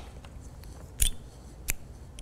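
A pair of small scissors handled to cut the yarn when fastening off: two short, sharp clicks, about a second in and again near the end.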